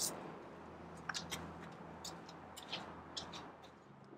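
Quiet background with a faint low hum and a few soft, scattered clicks.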